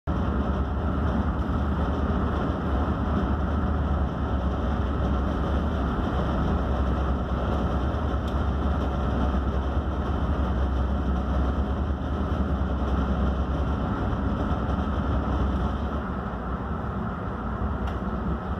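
Motor yacht's engine running steadily at low manoeuvring speed, a deep drone heard from inside the helm cabin; it eases slightly near the end.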